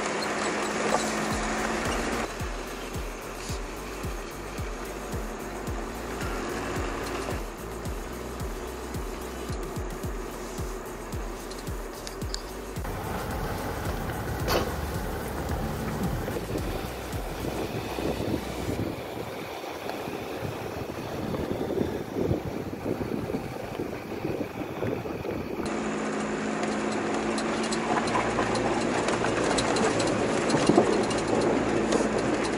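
Four-wheel-drive vehicles fording a braided river: engines running with water rushing and splashing around them. The sound changes abruptly several times as one clip gives way to another.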